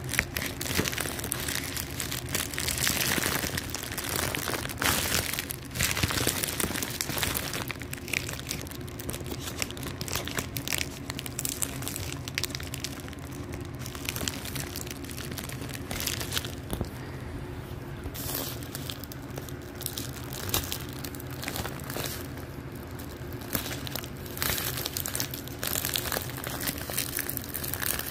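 Clear plastic packaging crinkling and rustling in the hands as a taped, plastic-wrapped pack of gift bags is worked open. The crackling is busiest through the first several seconds, then the handling goes lighter and more sparse.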